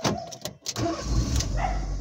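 Car engine starting inside the cabin: a few clicks, then the engine catches about a second in and runs with a steady low rumble.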